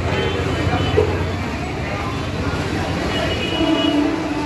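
Dense road traffic: a steady rumble of car, taxi and small-truck engines and tyres passing along a busy street.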